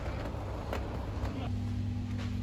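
Supermarket background sound: a steady low hum with a few light clicks.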